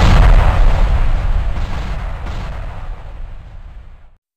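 Boom-and-rumble sound effect of an animated intro: a loud, deep, noisy rumble that dies away steadily over about four seconds and cuts off near the end.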